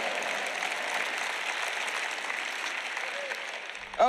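Audience applauding, the clapping gradually dying down.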